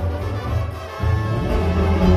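Live Sinaloan banda music, amplified: a sousaphone bass line under a brass section. The bass drops out briefly just before a second in, then comes back.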